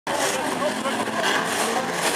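Banger race cars' engines running on the track, mixed with the voices of spectators nearby.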